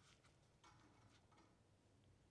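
Near silence, with a few faint ticks as a red rubber protective cap is worked off the electrode end of a glass CO2 laser tube.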